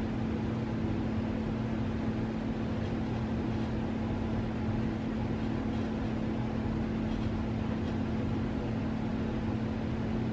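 A steady low hum with an even hiss over it, unchanging throughout: background room noise with no distinct event.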